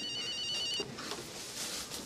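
Desk telephone's electronic ring, a warbling trill that stops less than a second in.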